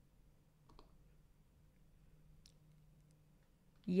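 Quiet room tone with a faint low hum and a few faint clicks, the clearest about a second in and another past halfway. A woman's voice starts right at the end.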